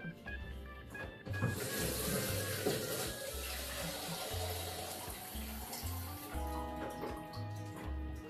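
Kitchen tap running water into a plastic measuring jug. The rush of the water starts about a second and a half in and dies away around six seconds, with background music underneath.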